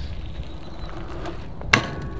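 A steady low rumble, then near the end a single sharp metal clank as a BMX bike's pegs land on a steel pipe rail to start a grind.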